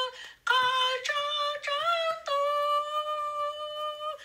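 A high female voice singing a hymn, unaccompanied: a few short sung phrases after a brief pause, then one long held note through the second half.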